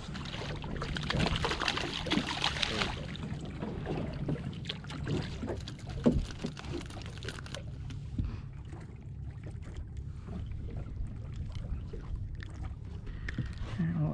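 Water sloshing and lapping against the side of a small boat, with wind on the microphone. The splashing is louder in the first few seconds as a small fluke is brought up at the surface, and there is a single sharp knock about six seconds in.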